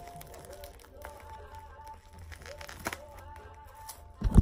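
Soft background music with faint crinkling of a plastic mailer bag being cut open with scissors, and a sharp click a little under three seconds in.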